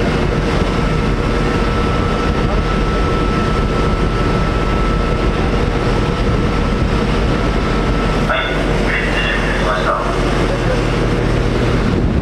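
Steady low drone of the ship's engines and deck machinery, mixed with wind, as the ship is manoeuvred to hold station. A thin steady whine runs through it and stops about eight seconds in.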